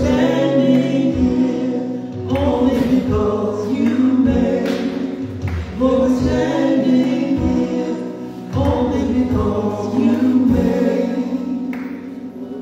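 Gospel worship song: a group of voices singing in long held phrases over a steady bass line.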